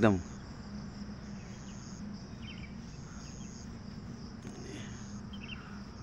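Faint background: a high-pitched, insect-like whine that pulses on and off, over a low steady hum.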